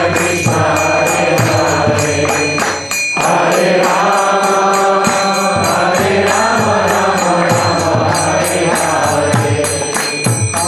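Kirtan: a man sings a devotional chant into a microphone, with hand cymbals (karatalas) striking in a steady rhythm. The singing breaks off briefly about three seconds in.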